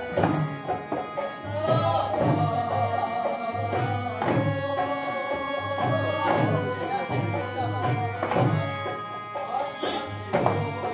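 Live traditional Kashmiri folk music: a held, wavering melody over steady hand-drum beats, with a sharp strike roughly every two seconds.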